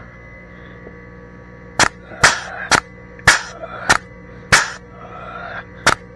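Air-operated grease gun on a tractor grease fitting, cycling in a string of about eight sharp snaps, roughly two a second, beginning about two seconds in.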